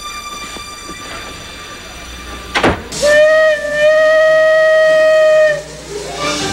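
Steam locomotive whistle blowing one long blast of about two and a half seconds, its pitch rising slightly as it comes on, just after a brief burst of hiss: the train signalling that it is ready to depart.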